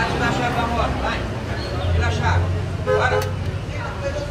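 Indistinct voices talking over a steady low rumble of nearby vehicle engines.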